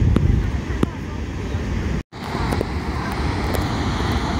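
Wind buffeting the microphone as a steady low rumble, broken by a brief dropout to silence about halfway through.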